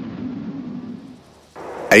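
A noisy rumble that fades over the first second and a half, then breaks off abruptly into a duller, steady hiss.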